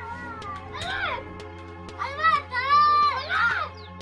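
Background music with high-pitched, squeaky vocal lines that swoop up and down, over a steady clicking beat; the loudest, longest notes come in the second half.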